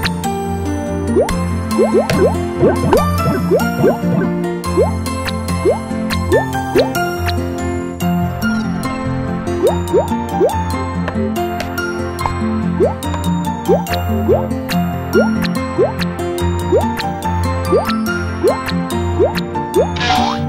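Playful children's cartoon background music with a steady bass line, sprinkled with short, quickly rising bloop sound effects, about one or two a second.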